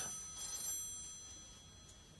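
A single bright metallic ring, several high tones together fading out over about a second and a half.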